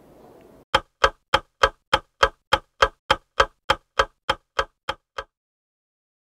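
Steady mechanical ticking, about sixteen even ticks at roughly three a second, that starts shortly in and cuts off suddenly about a second before the end.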